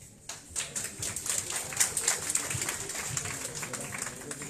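Audience applauding, beginning about a quarter of a second in: a dense, irregular patter of many hands clapping.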